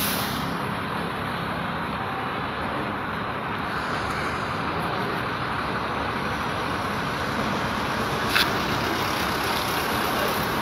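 Steady rush of air escaping from a lorry's front tyre valve as it is let down, with a brief sharp click near the end.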